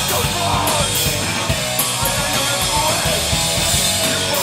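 Hardcore punk band playing live: distorted guitar, bass and pounding drums, with cymbal crashes struck every second or so.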